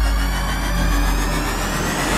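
Cinematic logo-intro sound effect: a deep, steady bass drone under thin high tones that glide slowly upward, building as a riser.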